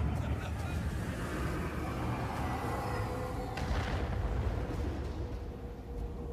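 Film soundtrack of a battlefield: a continuous low rumble, with a sudden hit about three and a half seconds in and a thin held musical note coming in a little before it.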